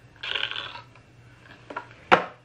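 An eyeshadow palette compact slid out of its cardboard box: one short scraping rustle of compact against cardboard about a quarter second in, then a faint click near the end.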